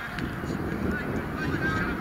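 Short, distant shouted calls from rugby players across the pitch, several voices overlapping, over steady wind noise on the microphone.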